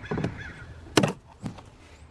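Flat-head screwdriver prying a plastic access panel off a car's rear hatch trim: a few short clicks and knocks, the loudest a sharp click about a second in as the panel's clips let go.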